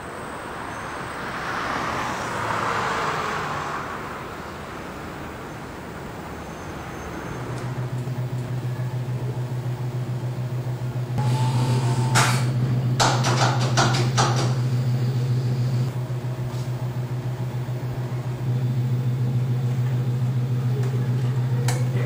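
A vehicle passes on a city street. About a third of the way in it gives way to the steady, low, finely pulsing hum of 35 mm projection-booth equipment running: Century projectors with carbon-arc lamphouses. About halfway through comes a cluster of sharp clicks and knocks as the equipment is handled.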